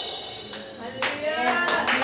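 The worship song's last sustained notes fade out, then about a second in a small congregation breaks into clapping, with a voice calling out over the claps.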